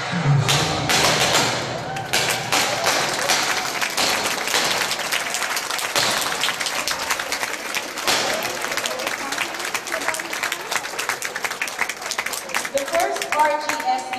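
Audience applauding: a dense, steady patter of many hands clapping, with voices mixed in.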